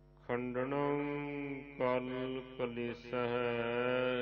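A voice chanting a devotional phrase in long held, slowly wavering notes, with short breaks between phrases, over a faint steady drone.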